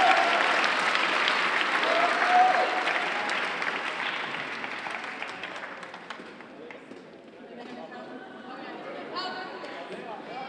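Audience applauding in a hall, the clapping dying away over about six seconds, followed by faint voices.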